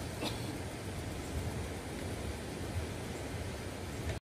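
Steady outdoor background noise: a low, unsteady rumble with a hiss above it, and a faint click about a quarter of a second in.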